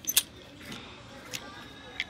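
Plastic clothes hangers clicking against each other and the metal rail as garments are pushed along a clothing rack: a sharp double click just after the start, then lighter single clicks about every two-thirds of a second.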